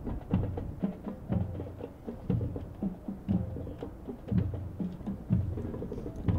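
Ceremonial band drums playing a steady marching cadence: a deep bass-drum beat about once a second, with lighter snare taps between the beats.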